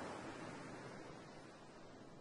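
Faint, even hiss that slowly fades away.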